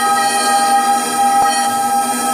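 Instrumental song intro: a sustained electronic keyboard chord, several notes held steady at a constant level.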